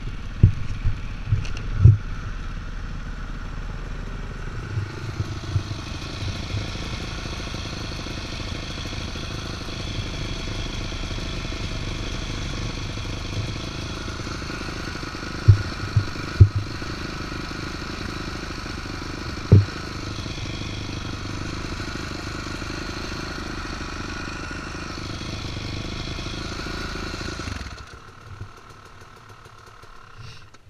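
Off-road vehicle engine running steadily while riding a gravel trail, with several loud low thumps from the ride. The engine sound drops off sharply near the end.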